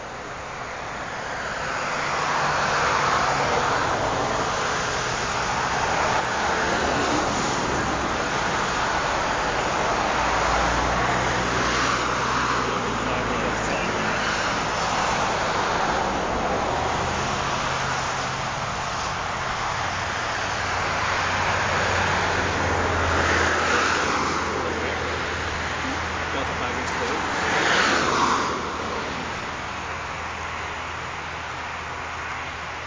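Road traffic: cars passing on the road, a wide rush of tyre and engine noise that swells and fades several times, the loudest pass near the end. A low steady hum runs underneath.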